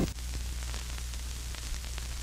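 Steady hiss with a low hum and a few faint clicks: the surface noise of an old black-and-white film soundtrack, heard once the music cuts off abruptly at the start.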